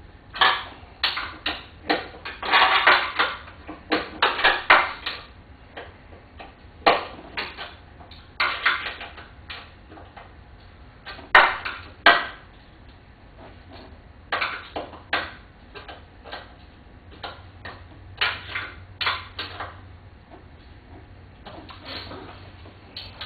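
Irregular metallic clinks and clatters of hand tools and small fasteners while a door mirror's studs are screwed in and fastened, coming in scattered short bursts with pauses between them.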